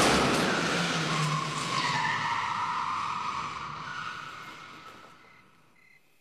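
A loud, noisy screeching sound effect that fades away over about five seconds, with a screeching tone that dips in pitch about two seconds in.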